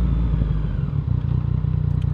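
Motorcycle engine running steadily at low revs while riding, with a low rumble of road and wind noise, heard from the bike's onboard camera.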